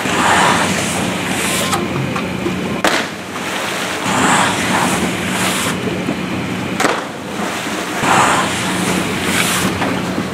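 Water splashing as skiers land in a water-ramp pool, a rushing splash about every four seconds over a steady low hum, with a few sharp knocks between the splashes.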